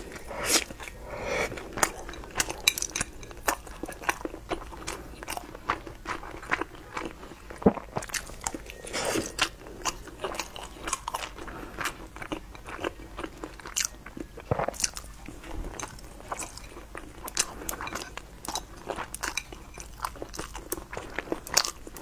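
Close-miked biting and chewing of a crispy fried piece of food: irregular crunches and crackles, several a second, throughout.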